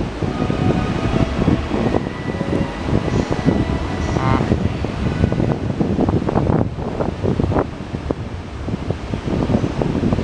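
Wind buffeting the microphone on a station platform, over the steady hum of a JR E233-7000 series electric train standing at the platform before departure. Faint steady tones come through in the first few seconds.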